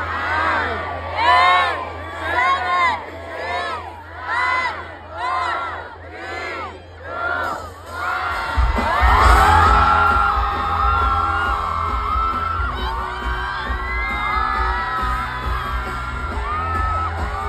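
Concert crowd chanting together in a steady rhythm. About halfway through, loud amplified music with heavy bass comes in over the crowd.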